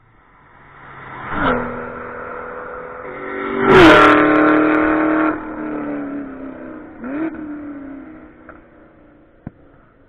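Two cars at full throttle come up the track and pass close by, engines revving hard. The engine pitch drops sharply about a second and a half in. The loudest pass comes about four seconds in, its note falling as it goes by, and then the sound fades away with one more brief swell.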